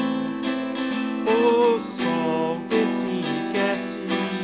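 A man singing in Portuguese while strumming alternating E minor and A minor chords on a hollow-body archtop guitar, with a held, wavering sung note a little over a second in.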